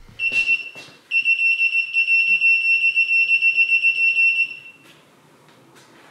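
Electronic beeper of a Unite U-110 portable wheel balancer: one short high beep, then a long steady beep at the same pitch lasting about three and a half seconds. A few faint clicks follow near the end.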